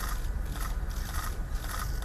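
Outdoor ambience: a steady low rumble with faint, irregular rustles and clicks scattered through it.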